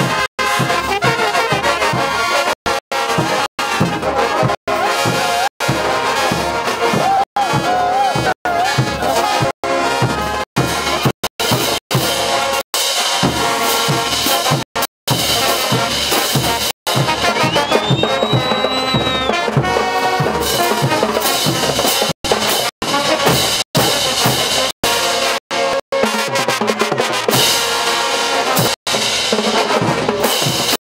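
Brass band playing morenada music: trumpets, trombones and big bass brass over bass drums and hand cymbals, the sound cut by many brief dropouts. About two-thirds of the way in, a thin high tone rises and falls over the band.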